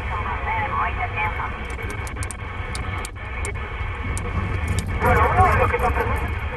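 Distorted single-sideband voices from distant CB stations over steady band hiss, heard from a President Lincoln II+ 27 MHz transceiver in upper sideband. The set is retuned from 27.555 to 27.455 MHz partway through, with a brief dropout about three seconds in, and stronger voices come in near the end.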